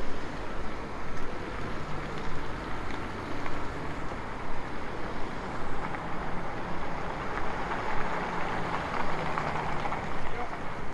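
City street traffic: cars passing on a busy multi-lane road, a steady mix of engine and tyre noise that grows louder near the end as a vehicle passes close by.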